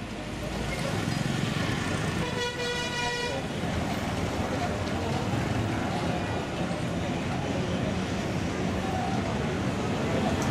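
Street traffic with motorbikes riding past, and a single vehicle horn toot held for about a second a couple of seconds in.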